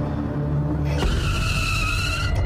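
Tyres of a small cargo truck squealing, starting suddenly about a second in and lasting just over a second, over background music.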